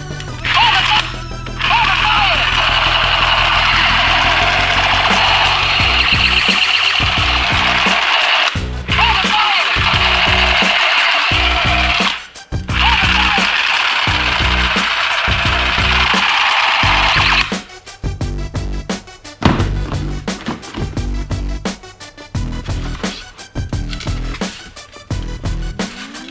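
Electronic toy rifle's battery-powered sound effect: a loud, dense buzzing crackle with short whistling chirps, held in long stretches with two brief breaks, then stopping for good after about 17 seconds. Background music with a steady beat runs underneath throughout.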